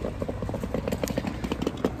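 Road traffic noise: a steady low rumble with irregular light knocks.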